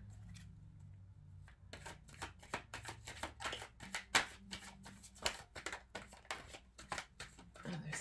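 A deck of tarot cards being shuffled by hand: a quick run of sharp card clicks and slaps, starting about a second and a half in and stopping just before the end.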